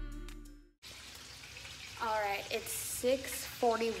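Music fades out, then chicken sizzles in a frying pan on the stove, a steady hiss from about a second in. A woman's voice starts over it about halfway through.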